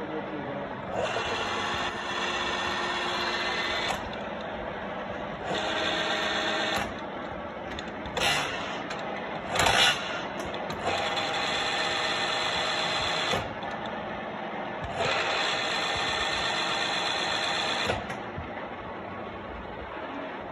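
Huron NU4 universal milling machine running with a steady hum. Four times it rises to a louder whine lasting two to three seconds, and there are two sharp knocks near the middle.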